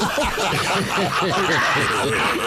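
Several people laughing at once, their laughs overlapping throughout.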